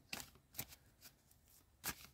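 A deck of large oracle cards being shuffled by hand: a few faint, short card clicks and slides, the loudest near the end.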